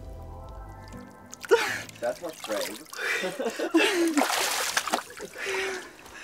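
A woman's wordless gasps, squeals and cries at the shock of the cold, over background music that cuts out about a second in.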